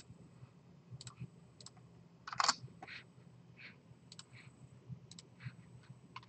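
Scattered, irregular clicks of a computer mouse and keyboard keys as CAD software is worked, with one louder clack about two and a half seconds in.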